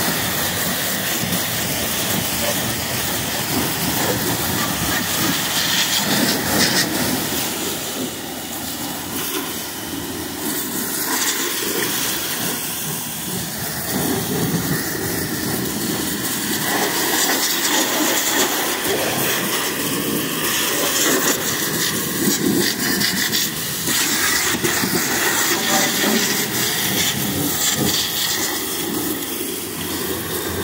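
Pressure-washer wand spraying a jet of soapy water onto a semi tractor's rear frame, mud flap and tyres: a steady, loud hiss of water striking metal and rubber.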